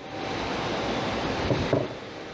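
Steady rustling handling noise on a body-worn camera's microphone as the wearer moves, with a couple of soft low bumps near the end.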